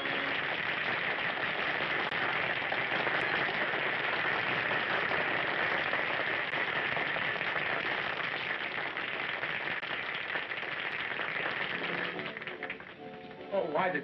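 Audience applauding steadily as a song ends, the clapping dying away about twelve seconds in.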